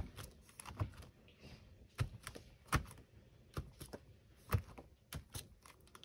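About a dozen light, irregular taps and clicks of a rubber stamp and plastic ink pad cases being handled on a tabletop.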